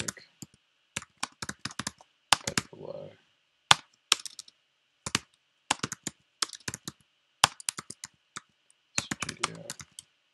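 Typing on a computer keyboard: quick runs of keystrokes with short pauses between words.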